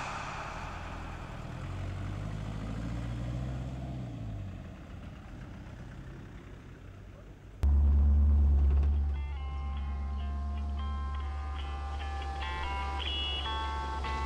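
Background music: a fading wash from the end of one track, with a low rumble that rises and falls. About seven and a half seconds in, a new track starts abruptly with a heavy bass drone, and a plucked melody joins a second later.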